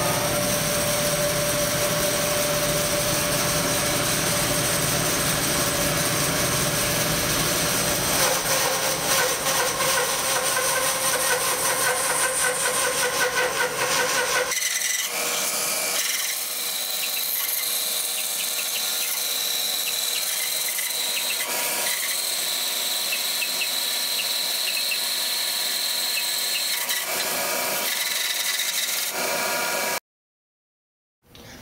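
Large bandsaw with a heavy resaw blade cutting lengthwise through a thick mahogany board, running steadily with the shop's dust collector on. About halfway through, the low rumble drops away suddenly and the sawing goes on thinner and higher.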